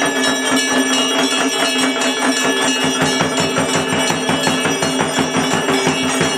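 Bells and percussion struck in a fast, even rhythm over a steady ringing tone, as in temple puja music.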